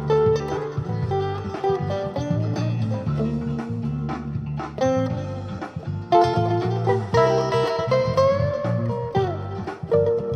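Blues music: a Fender Stratocaster electric guitar through a Fender Pro Junior amp playing lead lines over a backing track with a bass line, with bent notes near the end.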